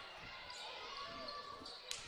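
Faint gymnasium ambience of a basketball game, with a basketball bouncing on the hardwood court.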